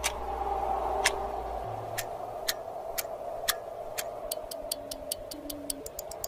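Clock ticking sound effect. The ticks come about once a second at first and speed up to several a second toward the end, over a steady sustained tone.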